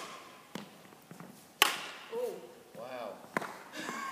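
Sharp knocks echoing in a large sports hall: a light one about half a second in, the loudest about a second and a half in, and another near the end, with a brief voice sound between them.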